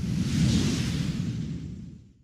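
Whoosh sound effect of an animated logo sting: a noisy rush that swells over the first half-second and then fades out near the end.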